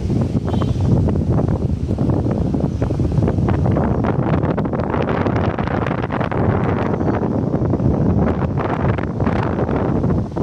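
Wind buffeting the microphone: a loud, steady low rumble with constant crackling gusts.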